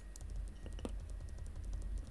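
Computer keyboard keys tapped in a quick, irregular run of light clicks as the chart replay is stepped forward bar by bar.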